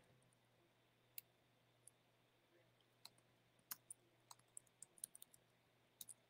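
Faint, irregular clicking at a computer: about a dozen scattered clicks, coming closer together in the second half, over a faint steady low hum.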